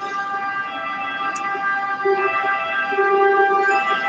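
A steady whistling tone made of several pitches held together, growing gradually louder, with a few short lower notes about two seconds in and near the end.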